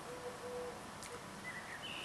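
Faint low hooting bird call, two short notes in the first second, followed by a faint higher chirp; otherwise a quiet background hiss.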